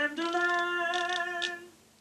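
A voice singing one steady held note for about a second and a half, fading out near the end.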